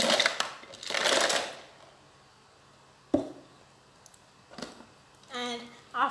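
Ice cubes poured from a plastic jar, rattling out in two quick pours within the first second and a half. A single sharp knock follows about three seconds in.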